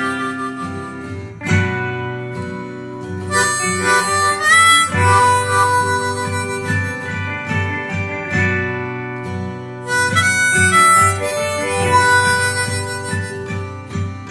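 Diatonic harmonica in G playing a melody of held draw and blow notes, one note bent upward in pitch about four and a half seconds in.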